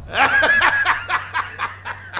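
A man laughing: a loud burst at first, then a quick run of 'ha' pulses, about five a second, that fades away.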